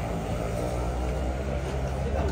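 A motor vehicle engine running steadily, heard as a low rumble in street noise.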